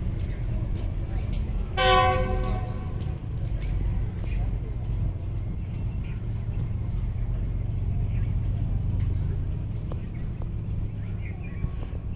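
Diesel locomotive horn sounding once for about a second, about two seconds in, from an approaching passenger train, over a steady low rumble.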